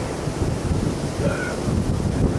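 Wind buffeting the microphone outdoors: a gusty low rumble with no speech.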